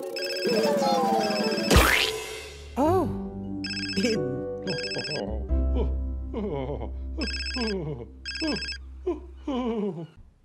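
A telephone ringing in a double-ring pattern, three pairs of short rings about three and a half seconds apart, over music with a low steady drone and voices.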